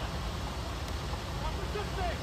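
Steady low rumble of wind and road traffic on an outdoor phone recording, with faint, indistinct voices in the distance.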